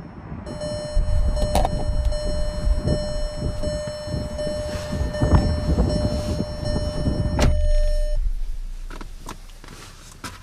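A car's driver door opening and someone climbing into the seat: low wind rumble, knocks and rustles, and a steady electronic warning tone. A loud thunk comes about seven and a half seconds in, and the tone stops shortly after.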